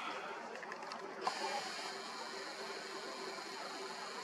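Faint steady whir of a camera's zoom motor, starting with a small click about a second in, over a low background hiss.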